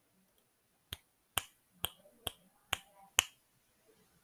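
Finger snapping: six sharp snaps, evenly spaced at about two a second, starting about a second in.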